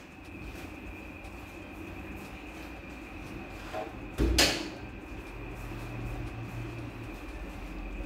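Latex balloons being handled and pushed into place, with one brief loud rub or bump about four seconds in, over a steady low hum.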